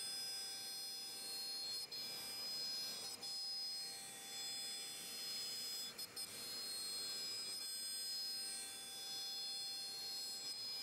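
CNC router spindle whining at a steady high pitch as the bit mills pockets into a wooden board, with a few brief dips in level.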